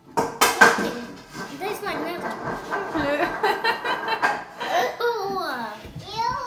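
Young girls reacting with disgust to a bad-tasting drink: a sudden loud outburst, then wordless groans, whines and laughter, with long sliding whining calls near the end.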